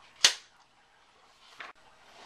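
A single sharp, loud bang a quarter second in, dying away quickly, followed about a second and a half later by a brief, much fainter hiss.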